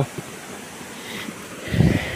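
Wind buffeting the microphone in a brief low rumble near the end, over a steady outdoor background hiss.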